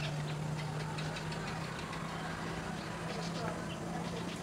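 Steady low hum of an engine running at idle, with faint, scattered short high chirps over it.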